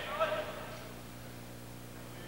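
A quiet pause in a large hall, with a steady low electrical hum from an old broadcast recording and a brief trace of a voice in the first half second.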